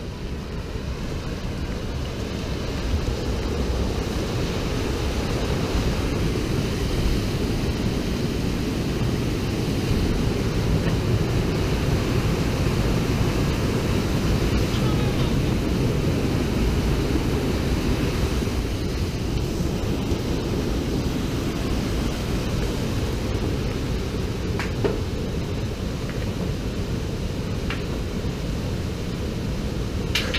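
A rocky mountain stream rushing beneath a wooden footbridge: a steady water noise that grows louder over the first few seconds and eases slightly near the end, with wind buffeting the microphone.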